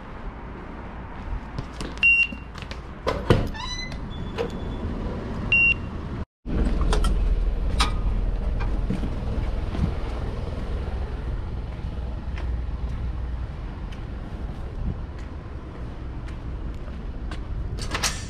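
Knocks and clicks with two short high beeps, one about two seconds in and one a few seconds later. Then, after a sudden break, a steady low outdoor rumble of traffic with scattered clicks, ending in a knock from a door.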